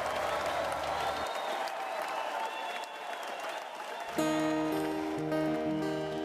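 Crowd applause, then about four seconds in a held musical chord of steady, sustained notes.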